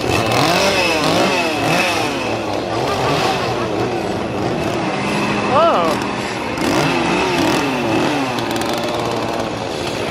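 Several chainsaws revving up and down over and over in overlapping rising-and-falling sweeps, with a brief higher-pitched sweep about five and a half seconds in, the loudest moment.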